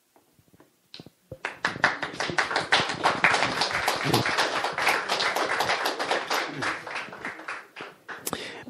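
Audience applauding. The clapping starts after a moment of near silence about a second and a half in, then thins and dies away near the end.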